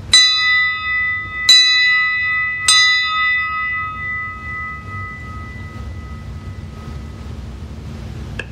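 A small bell struck three times, a little over a second apart, each stroke ringing on with a clear high tone that fades out over several seconds.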